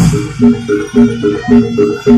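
Javanese gamelan music playing a brisk repeating pattern of short pitched, struck notes, about two a second, with a sharp percussion strike right at the start.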